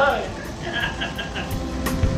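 A man laughing in short bursts, a string of quick "ha" pulses near the start and again around the middle.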